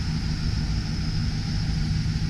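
Steady low vehicle rumble with a constant low hum.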